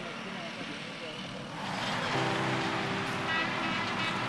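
Road traffic: a motor vehicle passing, growing louder about one and a half seconds in and then running steadily.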